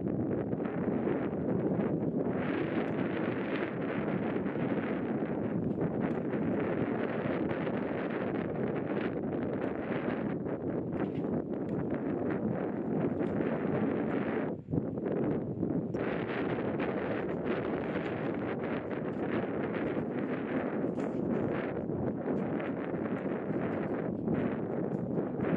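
Wind buffeting the camera microphone: a steady rushing noise, dropping out briefly a little past the middle.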